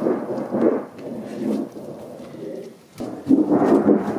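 A thin galvanized steel sheet flexing and wobbling as it is handled, giving a thunder-like rumbling rattle, with a sharp click about three seconds in.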